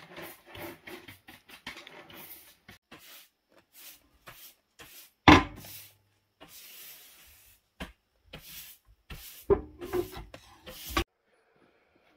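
Cast-iron wood-stove doors being handled and shut: scattered clicks and scrapes of metal, one loud knock about five seconds in, and a cluster of knocks shortly before the sound cuts off suddenly.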